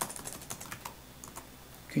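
Typing on a computer keyboard: a quick run of light key clicks, most of them in the first second and a half, as a terminal command is typed.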